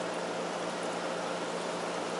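Steady hiss of a fish room's aeration, air pumps and bubbling sponge filters, with a low steady hum underneath.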